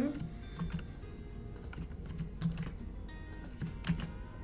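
Computer keyboard and mouse clicks, light and irregular, as text is copied and pasted between form fields. One sharper click comes near the end.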